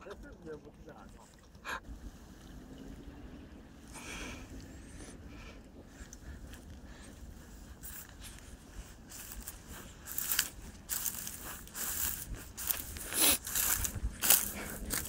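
Footsteps and rustling on dry grass and stones along a riverbank, short crunches and scrapes over a low outdoor background. They are sparse at first and grow busier and louder in the second half.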